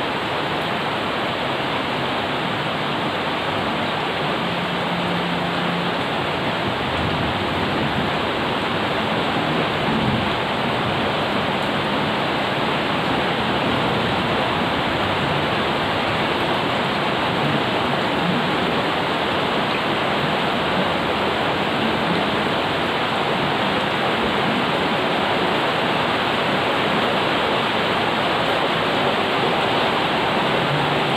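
Rain pouring down steadily onto garden plants and wet paving, an even, continuous hiss that neither builds nor eases.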